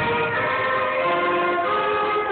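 School concert band of flutes and other wind and brass instruments playing under a conductor, holding long sustained notes that change pitch a couple of times.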